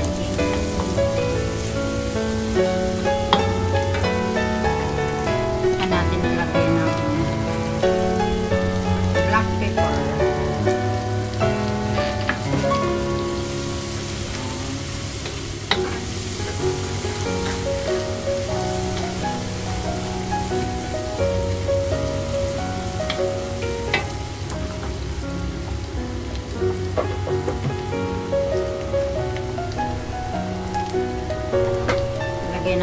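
Minced garlic and onion sizzling in butter and olive oil in a metal wok, with a wooden spatula stirring and now and then clicking against the pan, under background music.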